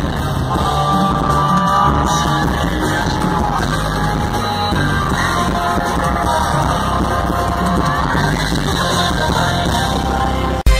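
Live concert music played loud over a festival PA and heard from within the audience: a band playing steadily with singing over it and crowd yelling mixed in.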